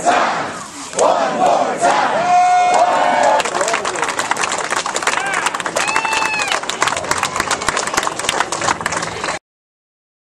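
Crowd chanting 'one more time', then breaking into cheering and applause as the cloth comes off the statue, with one long shout about six seconds in. The sound cuts off suddenly near the end.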